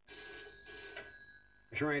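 A red desk telephone ringing: one ring of steady high tones lasting about a second and a half.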